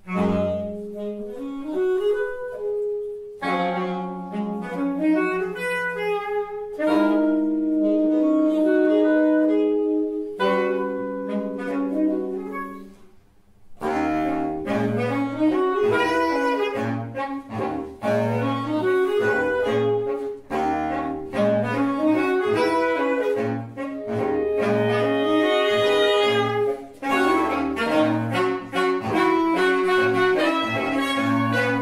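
Saxophone quintet playing contemporary chamber music: chordal phrases broken by short pauses, then, about halfway through, a fuller passage over a repeating low bass line from the baritone saxophone.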